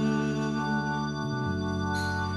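Live band music in a break between sung lines: held chords ringing steadily, changing to a new chord about one and a half seconds in.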